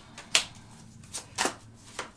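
Tarot cards being drawn one at a time from a hand-held deck: three sharp card snaps, the loudest about a third of a second in and about a second and a half in.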